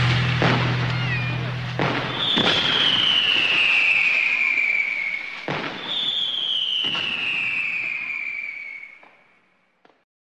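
Fireworks: sharp bangs and crackle with two long whistles, each falling steadily in pitch over a couple of seconds, while the last held chord of the music dies away in the first two seconds; all fades out near the end.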